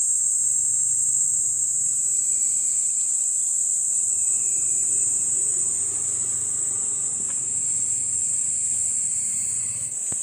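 A steady, high-pitched insect chorus, one unbroken drone that does not rise or fall.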